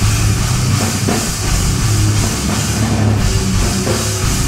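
Live heavy metal band playing loud: electric guitars and bass over a drum kit with cymbals, steady and dense throughout.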